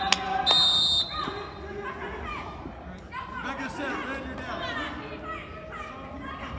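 A short, shrill referee's whistle blast about half a second in, stopping the wrestling action, followed by people chattering in the background.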